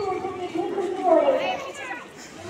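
Children's voices: a child speaking, with a crowd of schoolchildren chattering behind.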